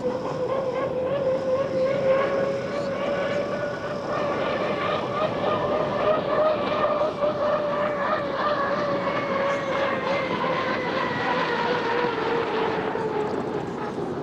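Unlimited hydroplane's turbine engine whining steadily at racing speed over a rush of noise. Its pitch sags slightly as it passes near the end.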